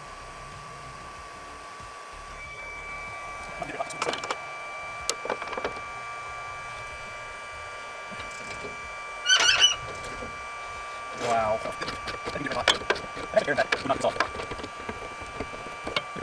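Solary Hot Rod induction bolt heater giving a steady high-pitched whine as it heats a rusted, stuck bolt. A ratchet then works the bolt loose: a short squeal about nine seconds in, then quick runs of ratchet clicks.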